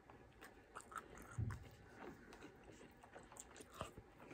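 Faint, close-up chewing and mouth sounds of a person eating, with a few light clicks of a plastic fork against a plastic takeout container.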